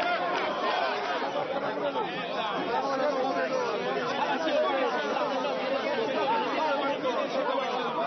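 A crowd of many people talking and shouting over one another at once, close around the microphone: residents heckling a politician at a protest.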